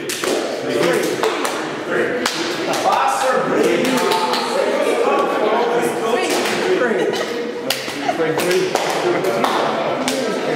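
Several people talking and laughing at once, with scattered sharp hand claps and slaps coming irregularly throughout from a gesture-based counting game.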